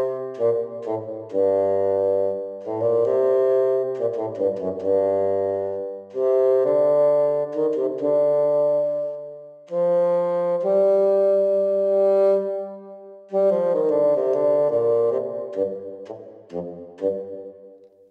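Audio Modeling SWAM bassoon virtual instrument played live on a MIDI keyboard with a breath controller: a slow melody of held and moving notes in several phrases, dying away near the end.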